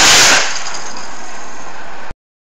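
Estes black-powder model rocket engine firing: a sudden loud rushing hiss, strongest for the first half second, then burning on steadily.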